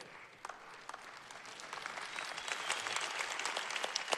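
Audience applauding: it starts faint and builds steadily louder over the few seconds.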